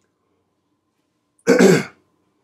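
A man clearing his throat once, a short rasping burst about one and a half seconds in.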